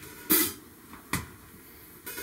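Two separate drumstick strikes on an acoustic drum kit, a little under a second apart. The first rings on longer than the second.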